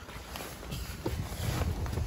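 Faint shuffling and handling noise from a person climbing into a car's driver's seat, with a few light knocks and a low uneven rumble.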